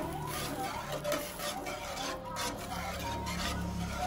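Metal spatula scraping and stirring against the bottom of a wok full of watery broth, in repeated strokes a few times a second.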